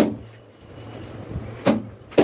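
Two sharp knocks on a large wall tile, one at the start and one near the end, as it is bedded into its adhesive, with a low steady hum underneath.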